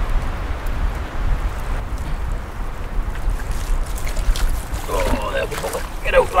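Pond water sloshing and splashing as a mesh fish trap holding a large trout is worked in the shallows, with a steady low wind rumble on the microphone and a few sharp splashy strokes late on.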